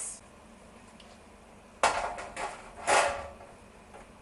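A metal roasting tin and serving spoon clattering and scraping as roast potatoes are dished up from it: two loud bursts, about two and three seconds in, after a quiet start.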